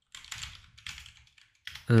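Typing on a computer keyboard: a quick run of keystrokes, ending just before a voice starts near the end.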